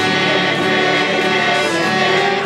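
Congregation singing a hymn together in slow, held notes.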